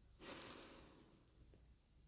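A faint breath out by a woman, rising quickly a moment in and fading away over about a second, against near silence.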